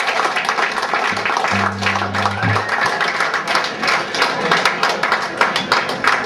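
Electric guitar played live through an amplifier: a dense, crackly, noisy texture of irregular strokes, with a low buzzing note held for about a second near the start.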